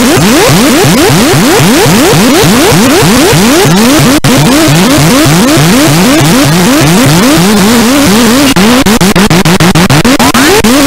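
Harsh industrial noise music from a Korg synthesizer, very loud: rapid, repeated upward pitch sweeps, several a second, over a dense wall of noise. Near the end the sweeps turn into a wavering wobble and the sound begins to chop rapidly on and off.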